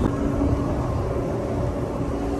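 Steady wind rumble on the microphone on a ship's open deck, with a steady low hum underneath.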